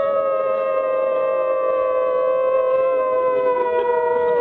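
Several voices howling together, holding one long note at slightly different pitches, with the pitch sagging slowly. It is the audience howling to coax a wolf into howling.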